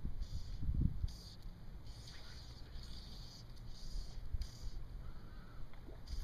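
Fly line being stripped in through the rod guides in short, even pulls, a faint swish about twice a second, with a low rumble in the first second.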